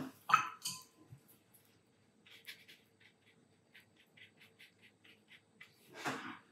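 Watercolour brush stroking and dabbing on mixed-media paper: a run of faint, short, scratchy strokes, roughly three a second, lasting about three seconds.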